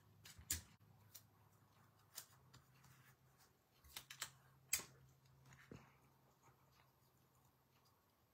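Near silence with a few faint, sharp taps and clicks of paper and card stock being handled and pressed down on a work surface, over a low steady hum.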